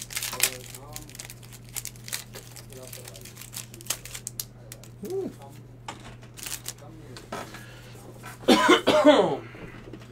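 Foil booster-pack wrapper crinkling and tearing open, then the cards being handled. A loud cough comes near the end.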